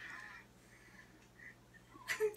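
Near silence: room tone with a faint steady low hum and a few faint short high tones.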